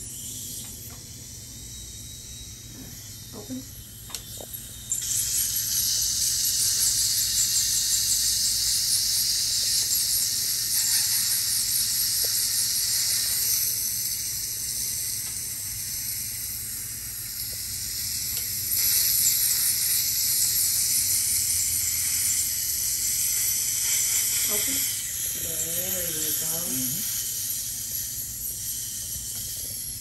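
Ultrasonic dental scaler working on the teeth, its water spray making a loud, steady high hiss that starts about five seconds in and eases off near the end. A saliva ejector hooked in the mouth adds a quieter suction hiss underneath.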